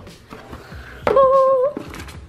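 A person humming one steady, fairly high note for about half a second, a little past the middle.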